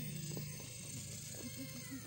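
Electric motor and gear drive of a radio-controlled rock crawler whining as it crawls over rocks, the pitch wavering up and down with throttle and load, with several short quick rises and falls near the end.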